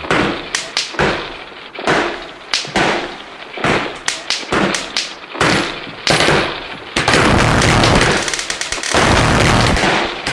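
Gunfire sound effects: a string of single shots and booms about half a second to a second apart, each with a ringing tail, turning into continuous rapid fire about seven seconds in.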